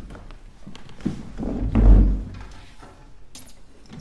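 Stage noises in a large hall: shuffling and small knocks, with one loud, deep thump about two seconds in, as the cellist sits down and sets his cello in place before playing.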